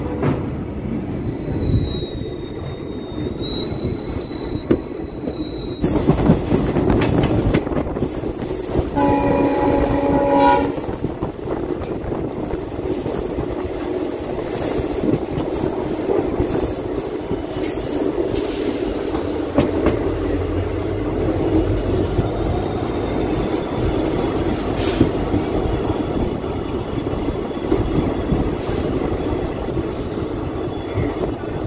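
Passenger train running on the rails, with the rumble and clatter of its wheels. A train horn gives one blast about nine seconds in, lasting about a second and a half. A thin, high, steady squeal from the wheels runs through the second half as the train rolls along a station platform.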